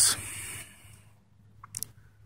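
A man breathing out with a soft hiss that fades within about a second, then a short click near the end.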